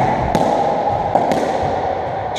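Racketball (squash57) rally: a few sharp knocks of the ball off rackets and the court walls, ringing in the squash court, over a steady background noise.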